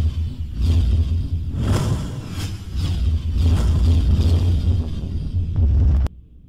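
Cinematic logo-intro sound effect: a deep steady rumble with a string of whooshes about two a second, cutting off suddenly at the end.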